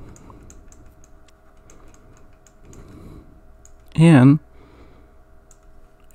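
Faint, irregular light ticks of a pen stylus tapping and stroking on a drawing tablet while handwriting. A short, loud voiced hum about four seconds in.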